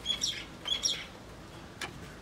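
A small bird chirping twice in quick succession, followed by a single short click.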